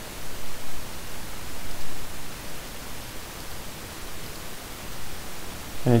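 Steady hiss of background noise on the narration microphone, with no other sound in it.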